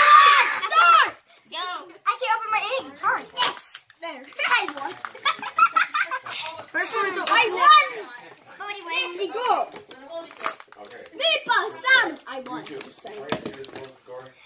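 Children chattering and exclaiming in high voices, with short crinkles and clicks from Kinder Joy egg wrappers and plastic capsules being opened.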